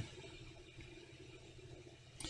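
Near silence: faint room tone with a weak, steady low hum.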